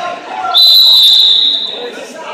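Wrestling referee's whistle: one long, steady, high-pitched blast starting about half a second in and lasting about a second and a half.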